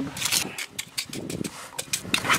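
A putty knife scraping and tapping through thick, stiff cement mix in a plastic bucket, as a series of short scrapes and taps.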